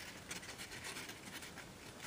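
Faint rustling and small crackles of folded printer paper being pinched and creased between the fingers.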